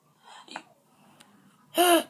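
A girl's short, loud gasp near the end, after a faint breath about half a second in.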